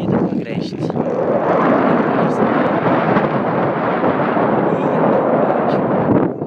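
Wind buffeting a phone's microphone: a loud, steady rushing rumble.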